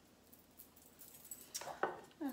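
Quiet room tone, then a few faint light clicks and one small knock near the end as kitchen items are handled around a Thermomix.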